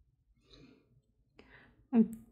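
Mostly quiet room with two faint, soft sounds, then a woman's voice starting up right at the end.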